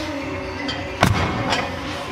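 A heavy strongman dumbbell dropped from overhead onto the gym floor: one loud thud about a second in, then a smaller knock half a second later. Background music plays throughout.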